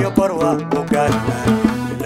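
Somali band music from oud, bongos and electronic organ: a bending melody line over a quick beat of hand-drum strokes.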